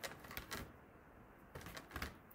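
Thin clear plastic berry clamshell clicking and crackling as fingers pick through strawberry tops inside it: a cluster of sharp ticks at the start and another near the end.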